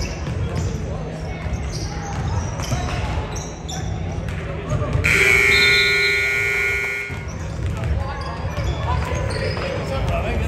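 Gymnasium scoreboard buzzer sounding one steady tone for about two seconds, starting about halfway through, as the game clock runs out to end the game. Around it, basketballs bouncing on the hardwood floor and voices echoing in the gym.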